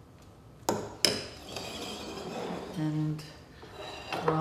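A metal spoon clinks twice against glass or china dishware, each strike ringing briefly, followed by a little clatter of dishes.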